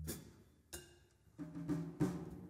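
Jazz trio of vibraphone, double bass and drum kit at a sparse, quiet point in the playing. A long note dies away into a few soft, separate percussion strokes, and low notes come in about one and a half seconds in.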